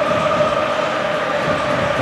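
Football stadium crowd noise: a steady din with a held droning tone running through it.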